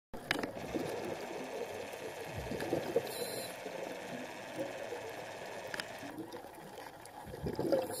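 Muffled underwater noise recorded with the camera submerged: a steady low wash of water sound with a few faint clicks.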